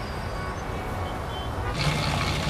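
Steady low rumble of city ambience, like distant road traffic. Near the end a brighter hiss comes in.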